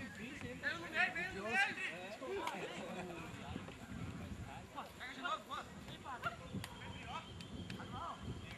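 Players shouting and calling out across an open football pitch, a jumble of short distant voices, with a few sharp knocks among them such as kicks of the ball.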